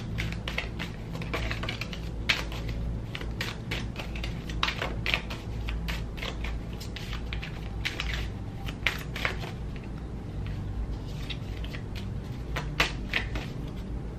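A deck of playing cards being shuffled and flipped through by hand, with cards laid on a table: a run of irregular sharp card snaps and clicks. A steady low hum runs underneath.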